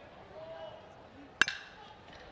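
Metal baseball bat hitting a pitched ball: one sharp, ringing ping about one and a half seconds in as the ball is chopped into the ground.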